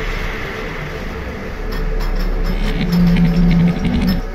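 Cinematic intro sound effects: a deep rumble and rushing noise that swell, with fast ticking from about halfway and a short steady hum shortly before the end.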